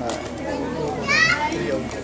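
Background chatter of children and adults, with one child's high-pitched call rising in pitch about a second in.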